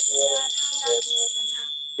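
A woman's voice speaking slowly in drawn-out phrases, heard over a video call. A steady high-pitched whine runs underneath.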